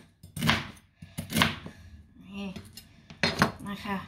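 Chef's knife chopping through crispy pork belly onto a plastic cutting board: two crunchy cuts about a second apart.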